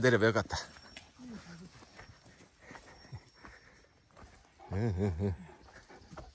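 A Great Pyrenees vocalising in low, wavering howls: one loud bout right at the start and another about five seconds in, with fainter short whines between.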